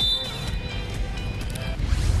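Volleyball arena background: music playing over the crowd's steady noise.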